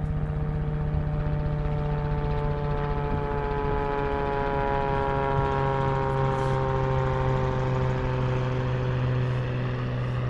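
A low-flying aircraft passing by, a steady engine drone whose pitch slowly falls as it goes, dropping most around the middle.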